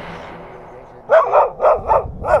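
A dog barking, about four short barks in quick succession starting about a second in.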